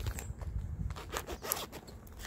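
Resealable zip-top plastic bag being pulled open, its zipper seal coming apart in an irregular run of small clicks and crackles.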